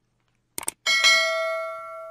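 Two quick clicks, then a single bell-like chime struck once and ringing out as it fades over about a second and a half. It is a sound effect marking the break between two news items in the radio bulletin.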